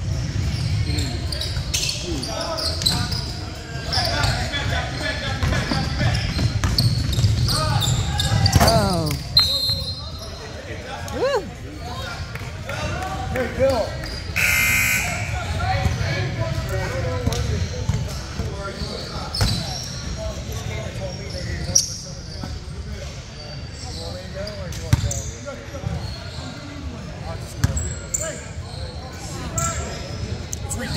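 Basketball game noise in a reverberant gym: a ball bouncing on the hardwood floor, sneakers squeaking and players and spectators talking and calling out. A referee's whistle blows briefly about halfway through.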